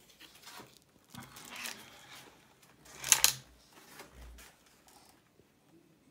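Handling noise from moving the RC buggy and phone on a plastic tablecloth: scattered rustling and scraping, with a louder, sharp double scrape about three seconds in.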